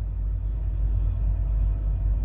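Steady low rumble of an idling diesel truck engine, heard inside a semi truck's cab.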